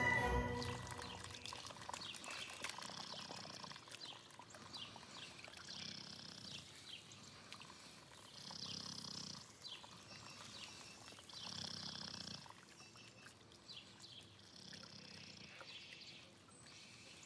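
Faint, slow breathing of a sleeping puppy, one soft breath about every three seconds.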